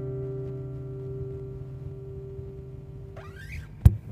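An acoustic guitar's final chord rings out and slowly fades. About three seconds in there is a short rising squeak of fingers sliding on the strings, and a sharp click comes just before the end.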